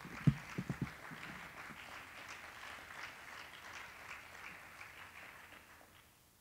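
Audience applause, heard at a distance, dying away near the end, with a few dull thumps in the first second.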